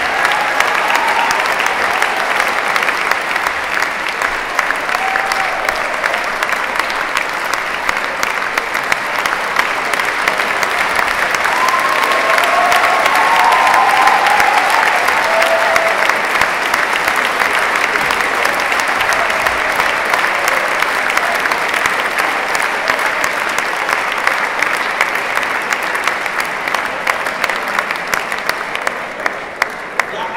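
A large audience applauding for a long stretch, growing louder toward the middle and dying away near the end.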